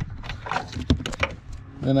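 A few irregular light plastic clicks and rattles of a Toyota Highlander tail-light bulb socket and its wiring being worked loose by hand inside the tail-light housing.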